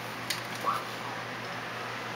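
Ryobi electric heat gun blowing a steady rush of air with a low motor hum, force-drying fresh primer on a plastic model part. A couple of faint handling clicks come in the first second.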